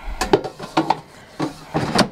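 Gourmia air fryer basket being slid into its drawer: a run of plastic knocks and scrapes, ending in a louder clunk as it seats near the end.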